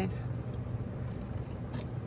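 Scissors cutting into a folded paper envelope blank, with a few faint snips near the end, over a steady low hum.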